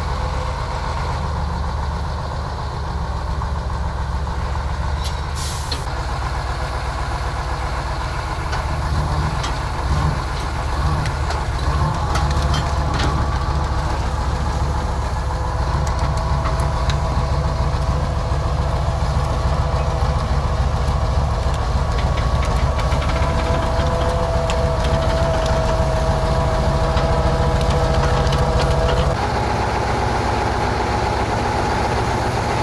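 A KrAZ six-wheel-drive army truck's V8 diesel running steadily under load while it tows a crawler tractor. A whine joins at about the halfway point and holds until the sound changes abruptly near the end.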